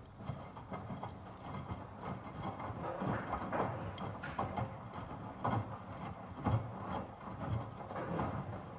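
Miele Professional PW 6065 Vario commercial washing machine tumbling during its first rinse: the drum turns, and wet laundry lifts and drops through the rinse water with uneven sloshing thumps over a low motor hum.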